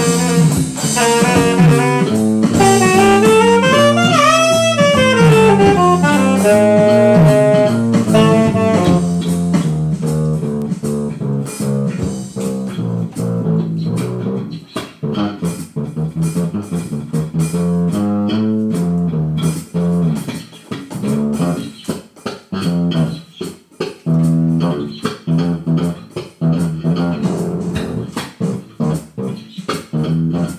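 Small jazz combo playing a jazz blues on saxophone, electric bass and electronic drum kit. A saxophone line with bending pitch fills the first several seconds, then drops out about nine seconds in, leaving the electric bass playing on with light drum hits.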